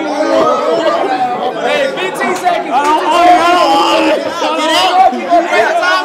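Group chatter: several men talking over one another at once, with no single voice clear.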